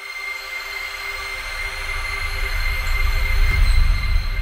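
Logo-reveal sound effect: a swelling rush of noise over a deep rumble, with steady high ringing tones, growing louder to its peak near the end.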